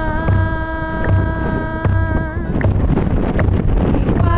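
A large stick-struck barrel drum beating slowly and evenly, about four beats every three seconds. Over it one long held note is chanted, fading out about two and a half seconds in.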